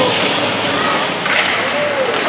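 Ice hockey play in an indoor rink just after a faceoff: a steady hubbub of crowd and players, with a sharp scrape on the ice a little over a second in.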